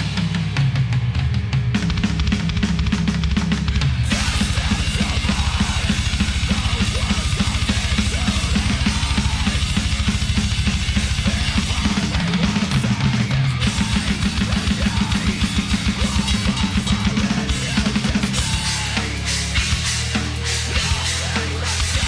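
Heavy metal drum playthrough on a Tama kit over the band's recording: rapid bass drum strokes running under snare hits and cymbals.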